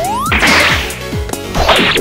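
Fight sound effects: a rising whoosh at the start, then swishing hits about half a second in and again near the end, over action music.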